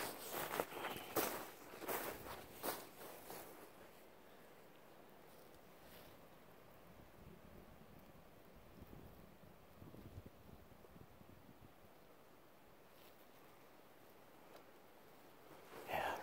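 Footsteps crunching in snow with a brush through twigs, close to the microphone, for the first three or four seconds. After that it falls to a quiet background with a few faint rustles about ten seconds in.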